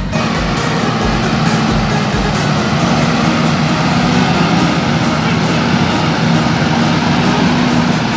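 Volvo FM 380 truck's diesel engine running with a steady low drone over street noise. A music track's thumping beat plays over the first couple of seconds, then drops out.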